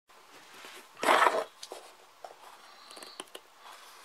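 Handling noise from a fixed-blade knife and a wooden stick being picked up off a wooden tabletop and brought together for carving. One louder rustling scrape about a second in, then light scattered clicks and scratches.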